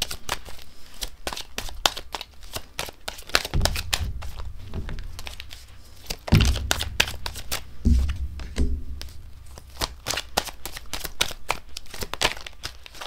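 A deck of tarot cards being shuffled by hand, a rapid continuous run of cards clicking and sliding against each other. A few dull low thumps come through, the loudest about six seconds in.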